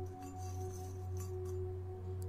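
A steady, ringing singing-bowl drone that holds without fading, with two or three faint clinks of small metal keys in a bowl.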